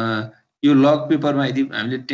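A man speaking. He opens with a short held 'uh', pauses briefly, then talks on.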